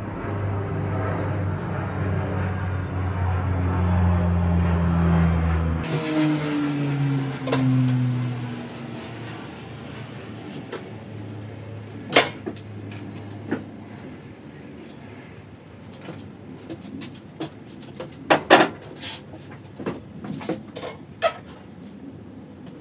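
An electric motor hums steadily, switches off about six seconds in and winds down with a falling pitch. Then come scattered sharp clicks and knocks from a golf club and tools being handled at the bench, the loudest about twelve seconds in and again around eighteen seconds.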